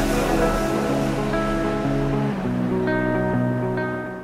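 Background music: sustained chords with no beat, changing chord about halfway through and starting to fade out near the end.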